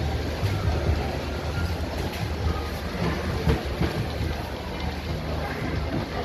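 Steady background din of a crowded food market: a dense rumble of noise with a low hum running under it.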